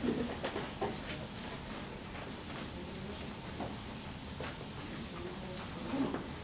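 Felt whiteboard eraser rubbing across a whiteboard in repeated back-and-forth strokes, a steady swishing hiss.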